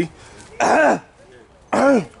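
A man coughing twice, short harsh coughs brought on by the heat of Carolina Reaper pepper popcorn he has just eaten.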